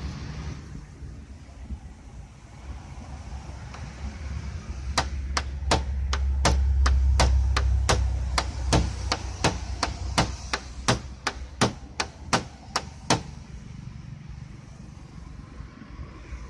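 A hand tool's tip scratching a car's painted panel in a scratch test: a run of about twenty sharp ticks, two or three a second, lasting about eight seconds. Under it is a low rumble of wind on the microphone.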